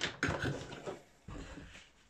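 Handling noises on a workbench: a sharp click, then irregular knocks and rustles for about a second and a half as clip leads and tools are moved about.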